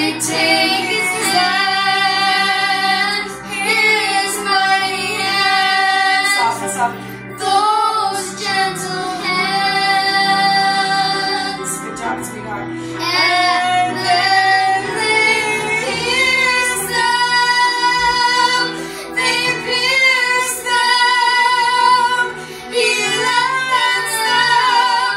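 A young girl singing a slow, sustained melody in long held notes, with a soft accompaniment underneath.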